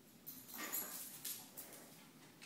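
A small dog's faint breathy sounds: a few short, irregular bursts with no bark or whine in them.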